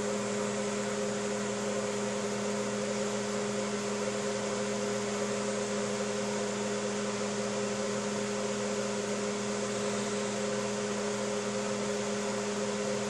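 A steady machine hum with a constant hiss, holding an even pitch throughout.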